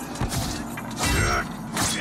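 Battle-scene soundtrack: dramatic film music mixed with sword-fight sound effects, with a sharp metallic clash near the end.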